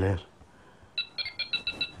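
Mobile phone ringtone: rapid electronic beeps, about six a second, starting about a second in.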